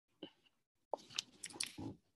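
A mouse click, then a quick run of computer keyboard keystrokes starting about a second in, faint and picked up by the computer's microphone.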